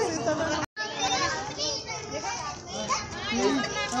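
Young children talking and calling out over one another. The sound drops out completely for a split second near the start.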